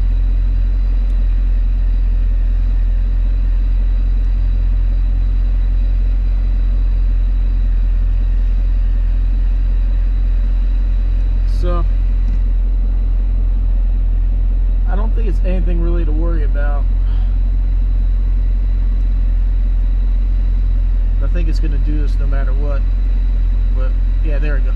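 Car engine idling steadily, heard from inside the cabin, with an even low hum. A single click comes about halfway through.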